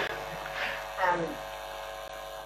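Steady electrical mains hum with a faint buzz running under a room recording, with a woman's short "um" about a second in.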